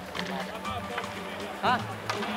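Ice hockey practice on the rink: scattered sharp clacks of sticks and pucks on the ice over a steady background music bed, with a short exclamation from a player near the end.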